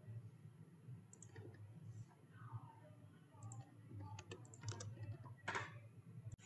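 Faint computer keyboard and mouse clicks: a few scattered taps, then a quicker run of clicks about four to five seconds in, over a low steady hum.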